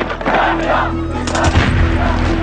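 Film soundtrack: voices shouting over music, then a volley of gunshots with a deep boom about a second and a half in.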